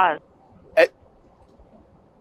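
The end of a man's word heard over a telephone line, then one short vocal sound from the man on the near microphone about a second in, a hiccup-like 'huh' of surprise. The rest is a faint line hiss.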